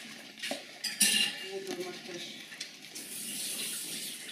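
A dish clinking and scraping as a dog eats kefir from it, with a sharp clack about a second in.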